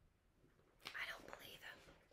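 A soft, breathy whisper from a woman, about a second long, near the middle of an otherwise near-silent stretch.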